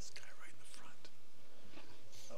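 Faint, whispery voices speaking away from the microphone in a hall, soft and indistinct with hissing s-sounds.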